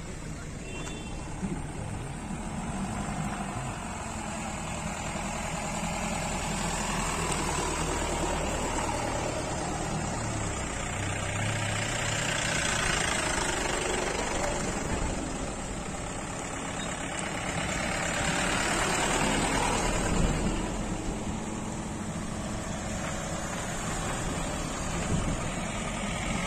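Engines and tyres of a convoy of SUVs driving slowly past one after another, over a steady low engine hum. The sound swells and fades several times as each vehicle goes by.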